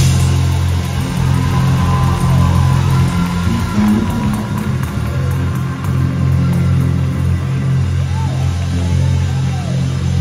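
Live gospel music from a mass choir and band, loud, carried by heavy sustained bass notes under full chords, with short sliding notes near the end.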